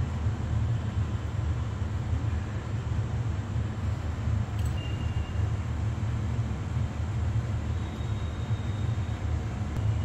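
A steady low rumbling hum with a hiss over it, unchanging throughout, like a machine or fan running in the background.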